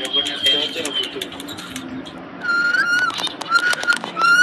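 Indian ringneck parakeet: a thin, high whistle sliding slightly down in the first second, with quick beak clicks as it nibbles its food. From about halfway it gives several short, high-pitched calls.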